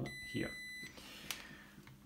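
Digital multimeter's continuity beeper giving one steady high beep of under a second, the signal that the probes are across a connected path. A single small click follows.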